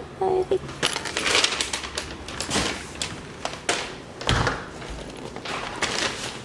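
Paper takeout bag rustling and crinkling as it is picked up and carried, in a run of quick crackles, then a few scattered knocks and one low thump a little past the middle.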